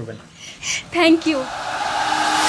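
A steady hissing noise that comes in about a second in and slowly swells.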